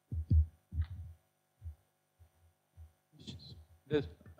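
Low, dull thumps and bumps of a microphone being handled, loudest in the first second. A few faint words start near the end.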